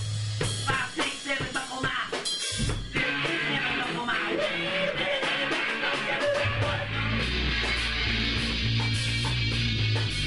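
Rock band music: a drum kit with sharp hits over the first few seconds, then guitar, with a heavy bass line coming in about six and a half seconds in.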